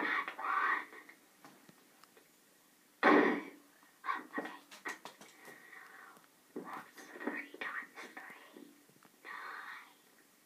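Whispering and indistinct, breathy speech, with a louder burst of voice about three seconds in and softer murmurs after it.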